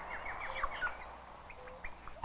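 Birds calling in a tropical rain forest: a quick run of short, downward-slurred chirps in the first second, then a few scattered chirps.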